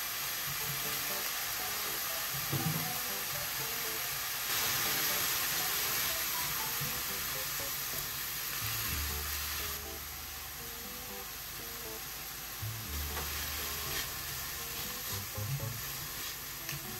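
Cabbage, carrot and sausage slices sizzling as they stir-fry in a stainless steel pan, stirred with a silicone spatula. The sizzle grows louder about four seconds in and eases off near ten seconds, with a few light spatula knocks near the end.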